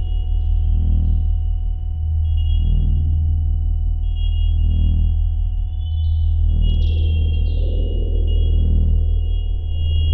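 Electronic sci-fi film soundscape: a deep steady drone under a held high tone, with a swelling pulse about every two seconds. Short falling chirps come in a cluster a little past halfway.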